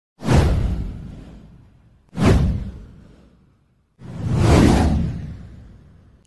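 Three whoosh sound effects of an animated intro: two sudden sweeps about two seconds apart that each fade out over about a second and a half, then a third that swells in more slowly and fades away near the end.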